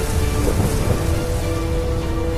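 Storm sound effects of steady rain and low thunder rumble, mixed with held musical notes, as the sound design of an animated logo.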